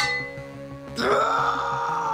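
Dramatic background music, with a long growling cry that begins about a second in and slowly falls in pitch: the cartoon character's transformation into his monster form.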